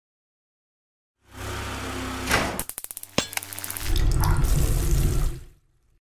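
Logo-reveal sound effect starting about a second in: a whoosh, a quick run of sharp clicks, then a loud deep bass swell that fades out shortly before the end.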